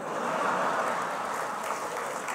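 A large audience laughing together, with clapping mixed in. It swells over the first half second and then holds steady.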